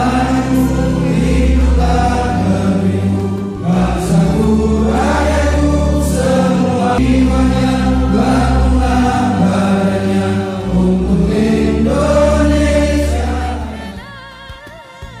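A song sung by a choir-like group of voices over instrumental backing, with long held notes. It fades away right at the end.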